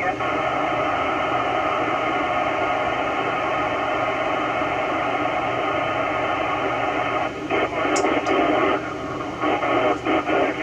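FM receiver hiss from an Icom IC-9700 tuned to the AO-91 satellite downlink: a steady, even rush of noise with no clear signal on it, which turns choppy and breaks up in the last few seconds.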